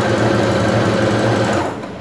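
Domestic sewing machine running steadily, its needle stitching through blouse fabric, then winding down and stopping near the end.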